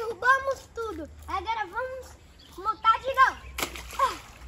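Children's voices talking and calling out, with a short splash of water near the end.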